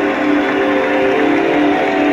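A live rock band's chord held and ringing out as a song ends, several steady tones sounding together.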